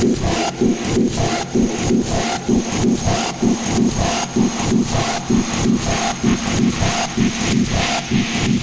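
Dark, distorted techno without a kick drum: gritty, noisy synth layers pulsing in a steady loop about twice a second.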